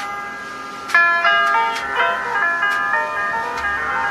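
Music soundtrack: a melody of struck notes that ring on, with a fresh set of notes striking about a second in and a low bass line joining about halfway through.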